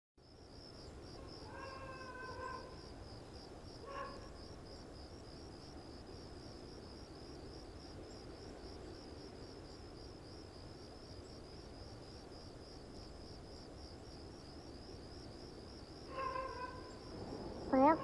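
Crickets trilling steadily, with a cat meowing about two seconds in, briefly again near four seconds, and once more near the end.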